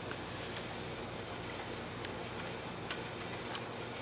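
Wooden Bluebonnet spinning wheel turning as it is treadled: a quiet, steady low whir with a few faint, irregular clicks.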